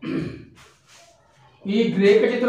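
A man's short sigh, breathy and dying away within half a second, followed by a pause before his speech resumes near the end.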